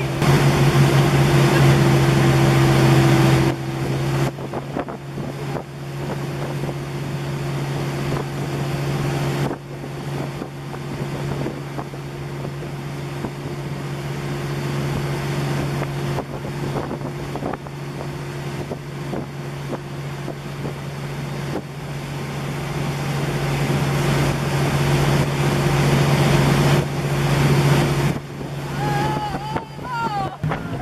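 Motorboat engine running steadily at speed while towing a kneeboarder, a constant low hum. Over it are the rushing splash of the wake and wind buffeting the microphone, louder for the first few seconds.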